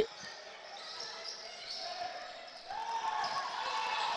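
Court sound of a basketball game: a ball bouncing on the hardwood and distant players' voices, rising a little about three seconds in.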